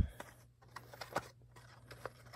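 Handling of a diecast car's old retail packaging: a knock right at the start, then faint, scattered clicks and scratches as the package is worked.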